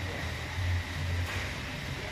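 Workshop background noise: a low, uneven rumble under a steady hiss, with no distinct events.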